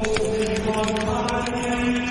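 Outro music: held, droning notes with light ticking percussion.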